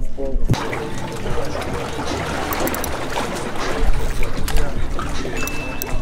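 Seawater splashing and lapping against a wooden pier, with a laugh about half a second in and voices in the background.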